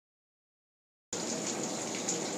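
Water from a leak under a building gushing and splashing steadily into standing water, a constant hiss that starts suddenly about a second in.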